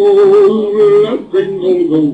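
Soundtrack of an animated Santa video clip playing back: a male voice singing with music, holding one note for about the first second before moving on to shorter notes.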